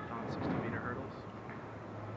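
Indistinct voices echoing in a large indoor arena, with a brief louder call about half a second in.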